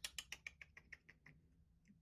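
Light clicks and taps of plastic golf-tee pegs being handled at a wooden peg board, a quick run of about ten a second that thins out after a second, with one more click near the end.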